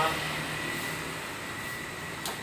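Traffic noise from the road outside, a steady hiss of passing vehicles that fades slightly.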